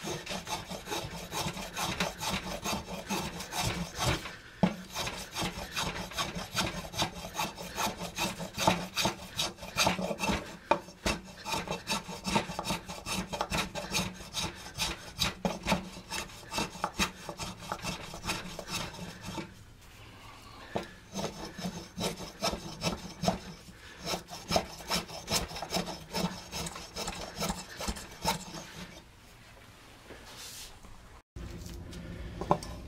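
Spokeshave shaving a wooden decoy blank in rapid, repeated short strokes, each a dry scrape of the blade across the grain, with a brief pause about two-thirds of the way through. This is rough material removal to shape the body.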